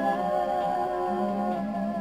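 A woman sings one long held note, close to a hum, over a ringing acoustic guitar. The note fades slightly toward the end as the ballad closes.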